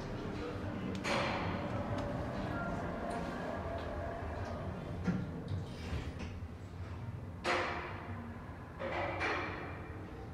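ThyssenKrupp passenger lift: its doors slide shut about a second in, then the car runs down a floor, under a steady background murmur.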